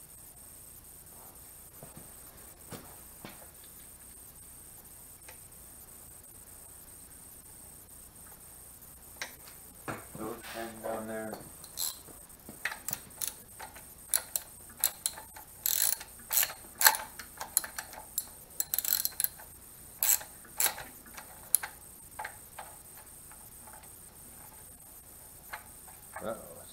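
Hand socket ratchet run down on the 13 mm nuts that hold the rocker arm assembly to the cylinder head of a VW 1500cc air-cooled engine. After a quiet start comes a short buzzing run of fast ratchet clicks about ten seconds in, then about ten seconds of sharp, irregular clicks and clinks of the ratchet and socket, before it goes quiet again near the end.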